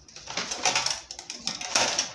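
A long plastic pattern ruler being moved onto and slid across a sheet of drafting paper, the paper rustling with small clicks and knocks in two louder spells.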